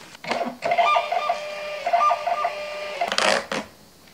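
Thermal shipping-label printer feeding a label: a motor whine of a few stacked tones for about two seconds, stuttering in places, followed by a short paper rustle as the label comes out. A brief rustle is heard just before the printer starts.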